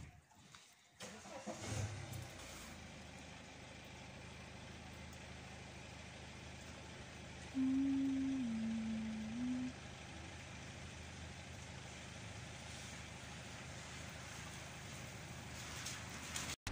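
A motor vehicle's engine running steadily nearby, starting up about a second in. About halfway, a loud steady tone sounds for about two seconds, stepping down in pitch partway through.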